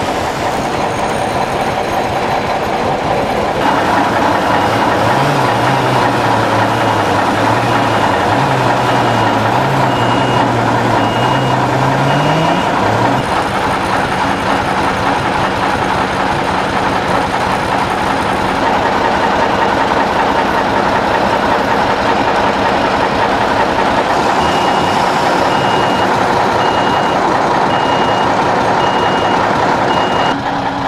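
Truck-mounted crane's diesel engine running steadily while the crane works, its note wavering up and down for several seconds in the first half. A warning beeper sounds in a long run of evenly spaced beeps, stops, then starts again near the end.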